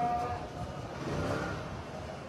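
A muezzin's call to prayer carried over a minaret loudspeaker: a long held note ends just after the start, then a pause between phrases with a faint trailing echo of the voice over a steady low background rumble.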